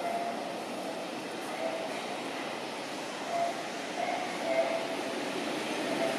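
Steady outdoor background noise, an even hiss and rumble, with a few short, faint tones rising above it now and then.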